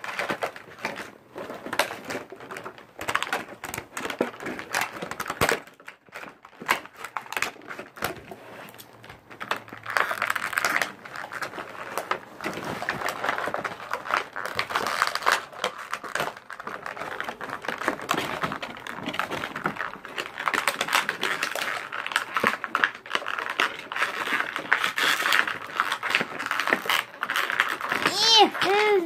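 Plastic toy packaging being cut and pulled apart: crinkling plastic with many quick clicks and snips.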